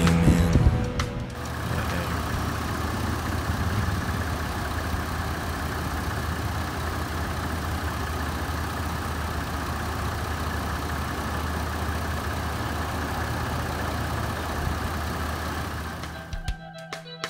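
Dodge Nitro's V6 engine idling steadily with the hood open, an even, unchanging hum that starts about a second in after a short stretch of music.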